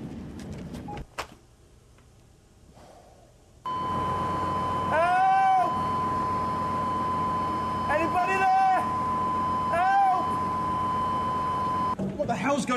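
A steady high tone comes in about four seconds in and holds on. Over it a man groans three times in drawn-out moans that rise and fall in pitch. Before the tone, a second of outdoor background noise ends in a click, followed by a quiet stretch.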